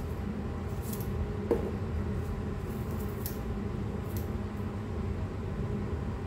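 Bonsai scissors cutting into the soft, fleshy base of an adenium (desert rose) trunk: a few faint snips and crunches, with one sharper click about a second and a half in, over a steady low hum.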